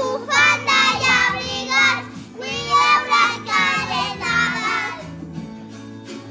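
A small group of young children singing a Christmas carol together over recorded backing music. The voices stop about a second before the end, leaving the backing music alone.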